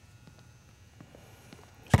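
A few faint taps, then near the end a single loud, sharp bounce of a basketball on the hardwood gym floor: the first dribble of a pre-shot free-throw routine.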